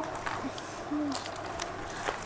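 A quiet lull with a brief, soft, hum-like voice sound about a second in, and a few faint clicks.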